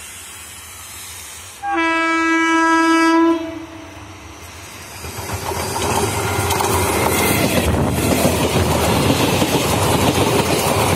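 Electric multiple unit local train sounding one steady horn blast of about a second and a half as it approaches. From about five seconds in it runs past close by, its coaches' wheels clattering rapidly over the rail joints under a loud rushing noise.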